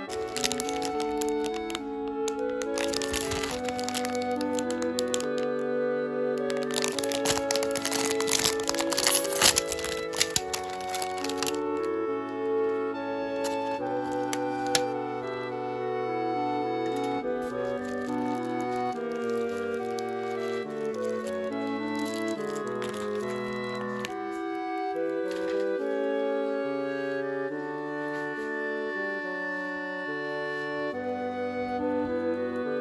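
Background music throughout, with a plastic cake wrapper crinkling and tearing over it for roughly the first twelve seconds as it is opened, loudest around eight to ten seconds in.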